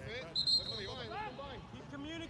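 Spectators' voices calling out and chattering on a soccer sideline. About half a second in, a short, shrill, steady high tone sounds over them; it is the loudest sound here.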